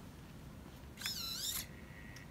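Analog RC servo motor whining for about half a second as it drives its arm to move the syringe plunger back in reverse. The whine is high-pitched and bends in pitch, starting about a second in.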